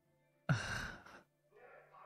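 A man's loud, breathy sigh into a close microphone, just under a second long, starting about half a second in.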